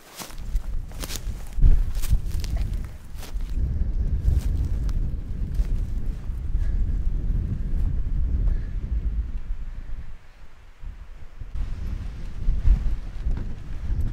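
A hiker's footsteps, with sharp rustling steps through low brush in the first few seconds, under a steady low rumble of wind on the microphone.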